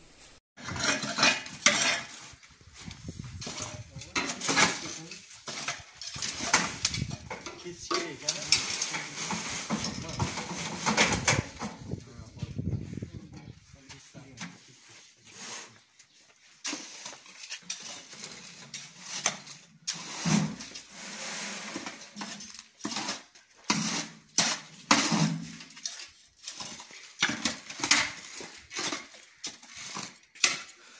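Steel shovels and hand tools scraping and clattering on concrete and on the steel mould of a cinder block machine as gritty concrete mix is shovelled in, a busy run of irregular scrapes and knocks.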